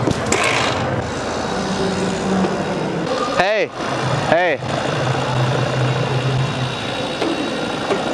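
Busy pedestrian street ambience with indistinct background chatter and a steady low hum. Just past the middle come two brief swooping tones, each rising then falling, about a second apart.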